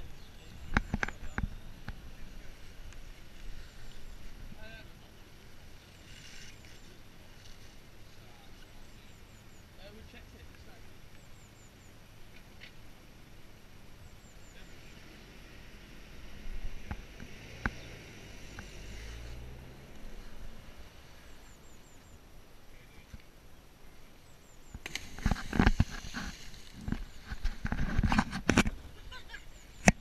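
Quiet outdoor background with faint high bird chirps. Near the end comes a loud, rough stretch of noise with heavy low thumps as a person jumps from the bridge and plunges into the river with a splash.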